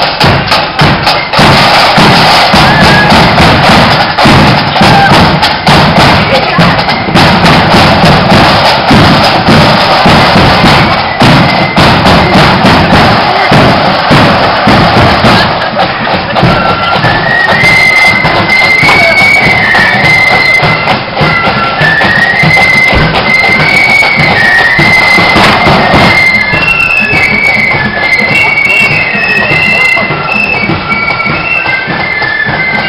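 Marching flute band playing: drums beat loudly and densely close by, and about halfway in a high flute melody comes through clearly above them.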